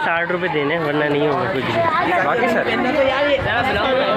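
People talking and chattering together throughout, with several voices overlapping.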